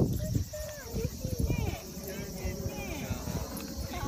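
Dogs play-fighting on grass: scuffling and rustling with many short, high whining squeaks, loudest in the first half second.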